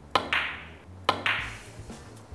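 Two sharp clicks of carom billiard balls about a second apart, each trailing off briefly. The first is the cue tip striking a cue ball hit low to keep it slow, and the second is the cue ball striking an object ball.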